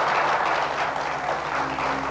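Audience applauding, with steady low music tones coming in near the end.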